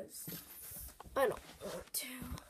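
A brief vocal sound sliding down in pitch, a little after a second in.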